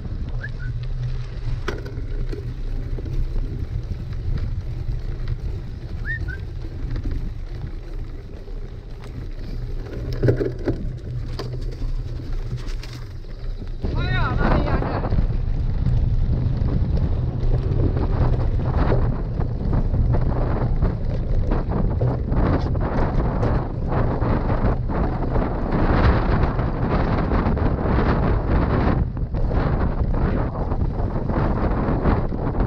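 Wind buffeting the microphone of a fork-mounted action camera as a mountain bike rides over dirt, paved and grassy tracks, with the front tyre and bike rattling over the ground. The noise grows louder and rougher from about halfway through.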